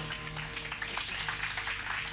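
Acoustic bluegrass string band playing softly: a stretch of quick, light picked notes, quieter than the full band.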